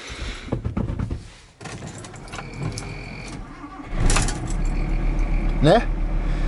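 VW T4 bus's five-cylinder diesel engine being started: after a short steady tone, it catches about four seconds in and settles into a steady idle.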